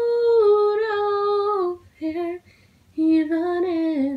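Unaccompanied female voice singing a wordless melody: one long held note that dips slightly and ends just before two seconds in, a short note, then another held note near the end.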